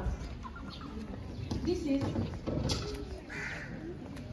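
Indistinct background chatter of several people talking, with a brief high-pitched call about three and a half seconds in.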